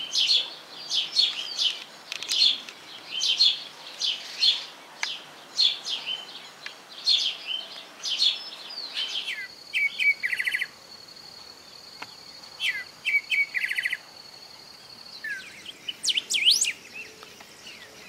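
House sparrows chirping, one to two short high chirps a second, as a fledgling begs and is fed. About halfway through the chirps give way to a steady high thin tone lasting several seconds, with a few short buzzy calls over it and more chirps near the end.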